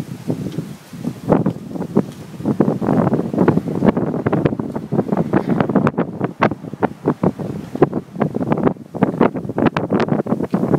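Wind buffeting a phone microphone: dense, irregular, loud thumps and crackles that come in gusts.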